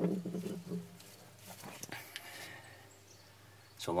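Faint knocks and scrapes from a 1989 Kawasaki X-2 jet ski's drive shaft being slid back and forth by hand in its rubber drive coupler, a few soft clicks about halfway. A short bit of a man's voice trails off at the start.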